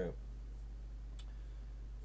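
A steady low hum under a pause in speech, with one short sharp click a little past halfway.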